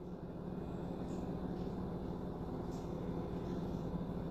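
Steady low background hum of a room between remarks, with no distinct events.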